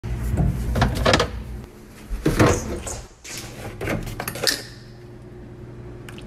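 Kitchen clatter: a series of knocks and bangs like a cupboard door and dishes being handled, the loudest around one and two and a half seconds in, over a low steady hum.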